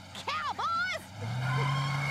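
A couple of short vocal sounds, then about a second in a car engine starts, rising in pitch, and runs on steadily as the car pulls away.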